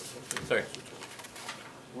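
A single short spoken "aye" in a voice vote, with a few faint clicks, in a quiet meeting room.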